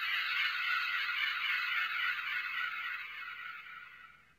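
Ultra Replica Beta Capsule transformation toy playing its transformation sound effect, pattern C (the episode 18 version), selected by long-pressing the B button twice and then pressing A. It comes from the toy's small built-in speaker as a steady, thin, high electronic sound with no bass, and fades away near the end.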